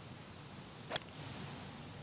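A golf iron striking the ball on a full swing: one short, sharp click about a second in, over a faint steady background hiss.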